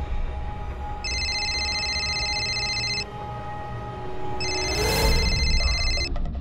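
A mobile phone ringing with an electronic warbling ring tone: two rings of about two seconds each, with a pause of about a second and a half between them. Background music runs underneath, and a whoosh sounds near the end.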